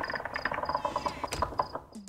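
Crickets chirping: a short, high chirp repeating about three to four times a second.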